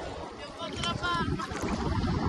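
Sea water sloshing and lapping right at the microphone, with wind noise, getting louder in the second half. A distant voice calls out briefly about a second in.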